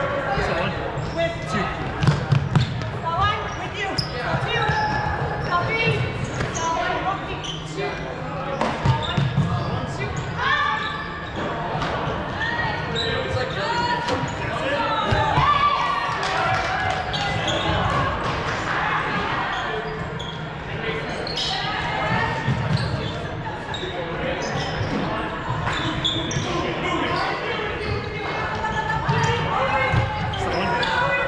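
Echoing gym sound of an indoor game: players' indistinct voices calling out, with repeated thuds of feet on the hardwood floor.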